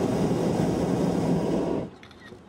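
Hot air balloon's propane burner firing, a loud steady rushing noise that cuts off abruptly near the end as the burner is shut off.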